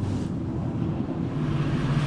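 Steady low hum of a van's engine running, heard inside the cabin.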